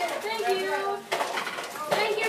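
Many children talking over one another in a classroom, with a few light clicks and clatters of objects handled on desks.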